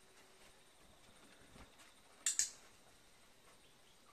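Two sharp clicks a split second apart, about halfway through: a dog-training clicker pressed and released to mark the dog standing on its mat.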